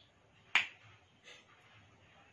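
Two sharp clicks as a wooden matchstick is pressed against a small card in a steel bowl of water: a loud one about half a second in, a fainter one just over a second in.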